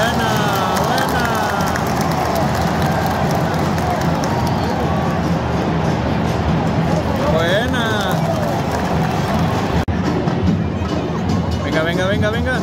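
Football stadium crowd noise: a large crowd's steady din with single voices calling out over it near the start and again about seven seconds in. The sound breaks off for an instant just before ten seconds in.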